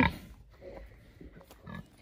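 A boar grunting faintly a few times.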